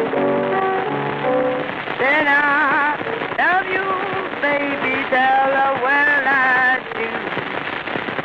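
Piano blues played from a 1930 78 rpm shellac record. For about two seconds the piano plays alone, then a woman's voice comes in singing long, wavering notes with vibrato over the piano. The record's surface noise crackles and hisses throughout.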